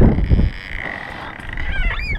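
Wind buffeting the microphone, then a long, thin creak as the door of an ice-fishing shanty swings open in biting cold.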